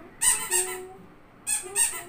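A baby squealing: two pairs of short, high-pitched, breathy squeals, the second pair about a second after the first.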